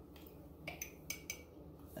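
Faint, light clicks and clinks as brown sugar is tipped and tapped out of a small glass jar into a stainless steel mixing bowl, about half a dozen over two seconds.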